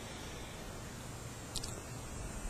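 Quiet room tone: a steady low hiss, with a couple of faint short clicks near the end.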